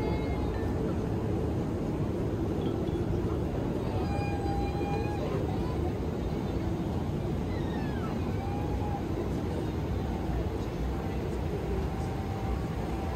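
Steady low cabin noise of a Boeing 787 airliner in cruise flight, the even rush of engines and airflow, with faint voices or tones rising briefly above it twice.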